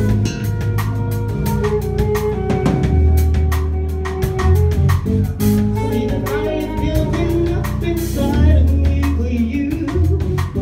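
Live soul-jazz band playing: a woman singing into a microphone over a drum kit and a steady bass line.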